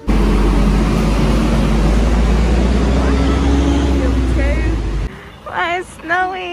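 Passenger train running, heard from inside the carriage: a loud, steady rumble and rushing noise with a faint motor whine. It cuts off suddenly about five seconds in.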